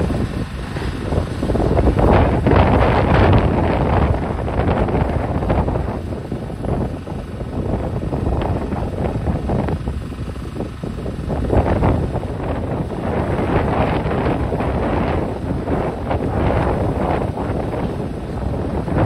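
Demolition excavator working on a wrecked concrete building: diesel engine rumbling under a continuous, irregular crunching and clattering of breaking concrete and falling debris. Wind buffets the microphone.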